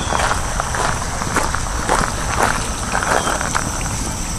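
Footsteps crunching on gravel, irregular and several a second, over a steady background hiss.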